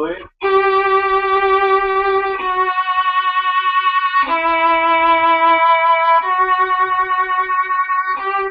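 Violin played with vibrato: a row of about four long bowed notes, each wavering evenly in pitch and loudness, demonstrating steady vibrato waves carried through to the end of each note.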